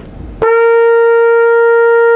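Trumpet playing a single long, steady note, written C (concert B-flat, about 466 Hz), that starts about half a second in. The tuner shows it right in tune.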